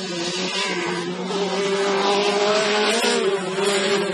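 Autocross race car engine running on a dirt track, its pitch held nearly steady, growing louder about a second and a half in.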